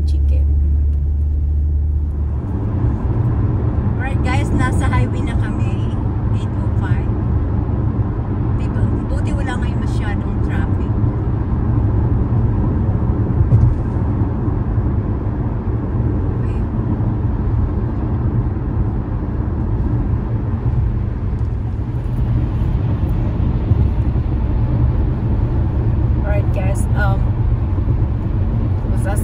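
Steady low rumble of engine and tyre road noise heard inside a car cabin at freeway speed.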